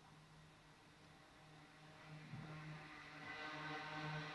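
Quiet room tone with a steady low hum. From about halfway a faint, steady humming sound with several even tones slowly grows louder.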